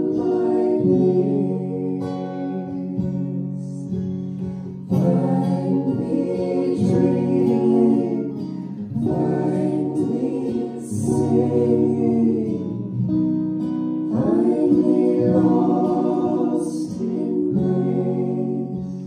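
An acoustic guitar accompanies voices singing a song, in sung phrases a few seconds long.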